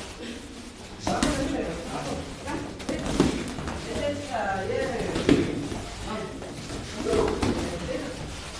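Boxing gloves landing punches during sparring: a few sharp thuds about one, three and five seconds in, with people talking.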